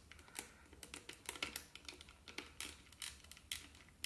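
Faint, irregular small clicks of needle-nose pliers gripping and working the metal minute-hand shaft of a quartz clock movement, with light handling of its plastic housing.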